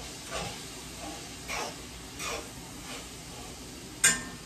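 Ground beef sizzling faintly in a frying pan on the stove, with a spatula stirring it in three short strokes.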